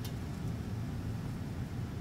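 Room tone: a steady low rumble of background noise with no distinct events.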